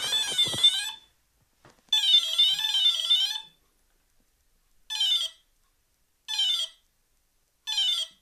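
ENERG Pro 40A brushless ESC sounding its programming-mode tones through the motor, as a warbling electronic tone. A longer tone of about a second and a half is followed by three short tones about a second and a half apart, as the programming menu steps through its setting options, here the PWM-frequency setting (8 kHz or 16 kHz).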